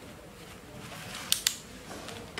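Removable battery pack of a Lenovo ThinkPad T470 pushed into its bay on the laptop's underside, latching home with two sharp plastic clicks in quick succession about a second and a half in.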